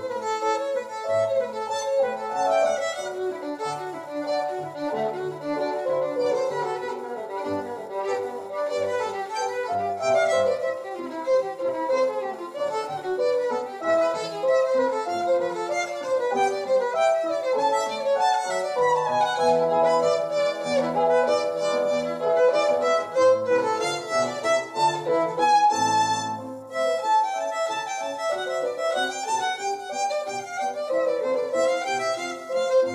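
Solo violin bowed through a quick-moving melody of many short notes. Near the end comes one bright held note, then a brief drop before the playing goes on.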